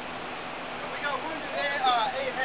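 A voice with unclear words, starting about a second in, over a steady background hiss.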